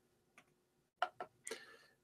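Near silence, then a few short, faint clicks about a second in.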